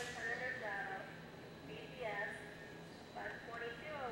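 Indistinct voices of people talking, too unclear to make out words, with one sharp click at the very start.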